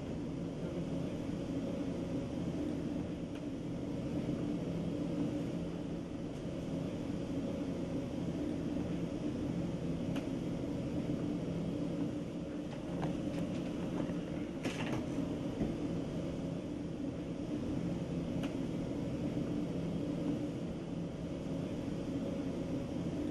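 A steady low droning hum, with a few faint clicks about 13 and 15 seconds in.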